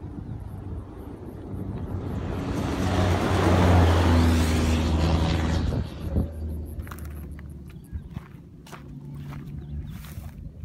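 A Dakar rally car passes at speed on a gravel track. Engine and tyre noise build over a few seconds to a peak about four seconds in, then fall away quickly at about six seconds as it goes by.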